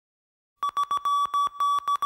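Morse code "SOS" beeped in one steady tone, starting about half a second in: three short beeps, three long ones, then the next short beeps of the signal, as the song's intro.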